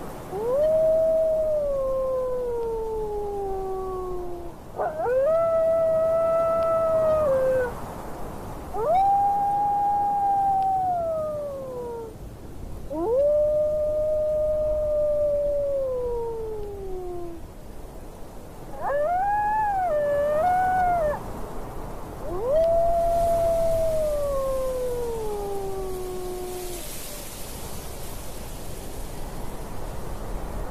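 Wolves howling: six long howls, one after another, each rising quickly and then sliding slowly down in pitch. One near the middle wavers up and down. A steady wind-like hiss runs underneath.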